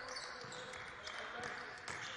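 Faint hall noise of a near-empty basketball arena, with a few sharp basketball bounces on the hardwood court, the clearest near the end.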